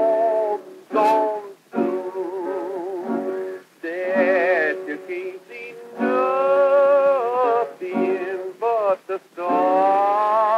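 A 1925 acoustic-era 78 rpm shellac record playing a wordless melody with vibrato in short phrases over guitar accompaniment. The sound is thin, with no deep bass.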